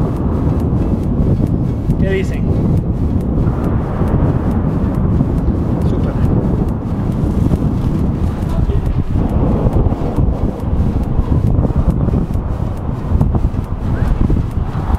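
Loud, gusting wind buffeting the microphone: a steady rumble that rises and falls.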